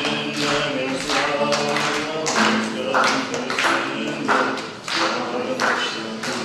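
A man and a woman singing a song together, accompanied by an acoustic guitar strummed in a steady rhythm of about two strokes a second.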